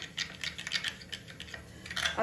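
A metal spoon stirring a wet spice paste in a small glass bowl, giving a quick irregular run of light clicks and scrapes of metal on glass.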